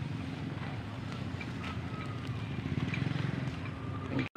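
Open-air ambience: a steady low rumble, with a few faint short chirps and light ticks over it.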